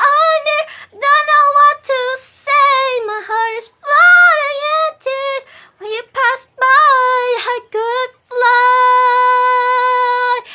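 A woman singing a slow love song unaccompanied in a high voice, in short phrases, ending on one long held note near the end.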